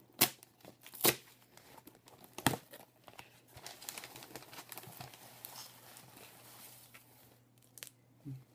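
Packing tape and plastic wrapping being torn and crinkled by hand as a taped-up can parcel is opened. Three sharp tearing snaps in the first two and a half seconds, then a steadier crinkling rustle that dies away shortly before the end.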